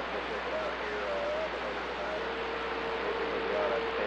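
CB radio receiving a weak long-distance skip signal: steady static hiss with a faint, garbled voice buried in it, and a steady whistle tone joining about halfway through.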